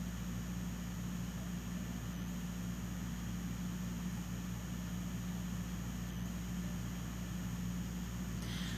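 Room tone: a steady low hum with a faint hiss, unchanging throughout, with no other sound.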